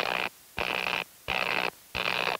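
Sound effect of sparks jumping a spark plug's electrode gap: short noisy buzzes, about three in two seconds, repeating at an even rhythm.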